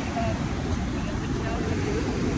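Busy beach ambience: indistinct chatter of many beachgoers over a steady low rumble of wind and surf.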